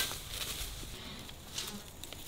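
A sharp snap, then the rustle of raspberry canes and leaves being handled during picking, with an insect buzzing close by.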